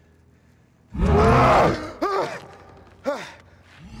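The Hulk roaring: a sudden loud roar about a second in, held for most of a second, then two shorter cries that rise and fall in pitch.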